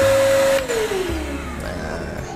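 A Worcraft cordless wet/dry shop vacuum with a stainless steel drum runs with a steady whine and rush of air. About half a second in it is switched off, and its motor winds down in a falling whine.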